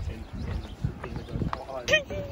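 Footsteps of several people thudding and knocking on the wooden plank deck of a suspension footbridge, an irregular run of low thuds with a few sharper knocks.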